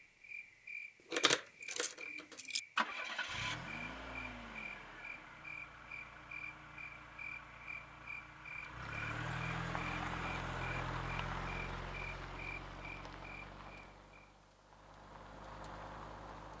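A car door knocks and shuts a few times, then a car engine starts about three seconds in and idles, growing louder as the car pulls away and fading near the end. Crickets chirp at a steady, even rate through most of it.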